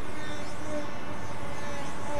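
Electric motor and propeller of a round-the-pole model aircraft running steadily in flight, its note going down as the power to it is turned down.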